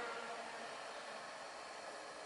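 Faint, steady hiss of room tone with no distinct events.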